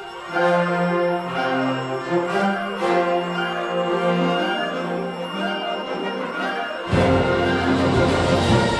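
Concert band playing a march: a lighter passage of sustained wind lines without the lowest instruments, then about seven seconds in the low brass and percussion come in and the band grows louder.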